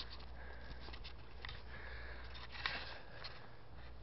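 Quiet outdoor background with a steady low hum, and faint rustles and clicks from the camera being carried across the yard on foot.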